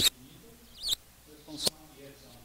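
A pause in a man's speech in a hall: a faint high squeak a little before one second in, and two short sharp clicks, about three quarters of a second apart.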